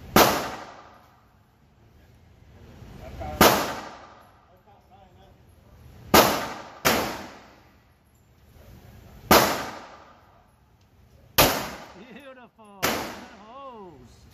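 Seven handgun shots fired one at a time at a slow, deliberate pace, mostly about three seconds apart with one quick pair, each crack followed by a reverberant decay in an indoor range.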